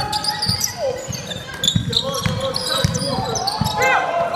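Basketball being dribbled on a wooden gym floor, a bounce about every half second, in a large echoing sports hall. Sneakers squeak on the floor near the end, among players' calls.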